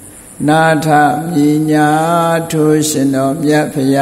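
A Buddhist monk's single male voice chanting Pali verses in a drawn-out recitation on long, steady-pitched notes, beginning about half a second in.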